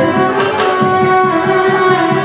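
Carnatic ensemble music: a violin plays a held, ornamented melody over quick, steady drum strokes.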